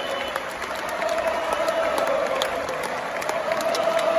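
Theatre audience applauding, with a steady held tone running beneath the clapping.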